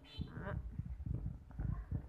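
A run of low, irregular knocks and rumbles: handling noise as the phone is moved about. A brief spoken word comes about half a second in.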